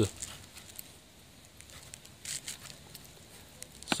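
A metal spoon scraping and digging in loose potting soil in a pot, faint scratching in two short spells.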